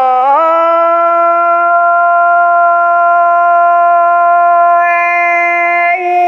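A woman singing an Iu Mien song, her voice alone: she slides up into a note at the start and then holds it steady for about five seconds.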